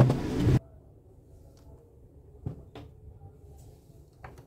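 A burst of loud knocking and rustling from eggs being handled and moved into a plastic tub, cutting off abruptly about half a second in. A few faint light knocks follow over low room noise.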